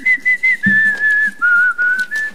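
A woman whistling a short tune into a microphone, a few clean notes stepping down in pitch: a song from a school lip-dub video that is stuck in her head.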